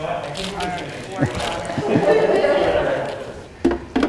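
Foil wrapper crinkling as a soft block of cream cheese is peeled out of it by hand, with scattered clicks and some voice sounds in the background.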